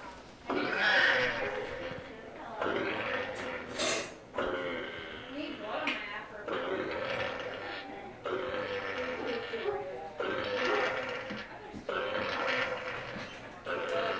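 A pet pig grunting and squealing into an anesthetic induction mask while still awake under the gas, a rough call about every one and a half to two seconds. The first call, about a second in, is the loudest.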